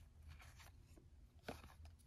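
Near silence, with the faint rustle of glossy trading cards being slid over one another by hand and a soft tap about one and a half seconds in.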